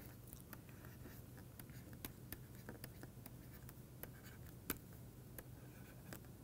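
Faint taps and scratches of a stylus writing on a pen tablet, irregular short clicks over a low steady hum.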